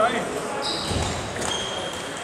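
Table tennis hall ambience: light clicks of table tennis balls on tables and bats amid background chatter, with a couple of brief high squeaks.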